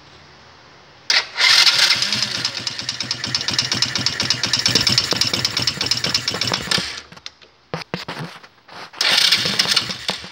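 A 125 cc air-cooled single-cylinder mini quad engine being started with the choke pulled. It is loud for about six seconds and then stops, and a second short start attempt comes about a second before the end.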